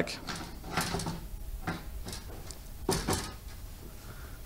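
A perforated loudspeaker grille being set back onto the cabinet of a NEXO P12 speaker, making a handful of short knocks and clicks as it seats. The loudest comes about three seconds in.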